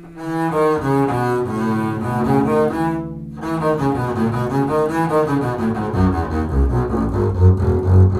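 Double bass played with a bow: a two-octave E major scale passage whose notes rise and fall, with a brief break about three seconds in, moving down to its lowest notes near the end.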